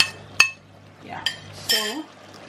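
Two sharp clinks with a brief ring, about half a second apart, as a wooden spoon knocks against an enamelled pot while stirring pieces of mutton, followed by a faint stirring rustle.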